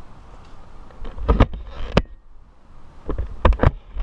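Sharp knocks and thumps from a climber working in the crown of a Mexican fan palm. A quick cluster comes about a second in, then a single sharp click at two seconds, and another cluster of hits around three and a half seconds.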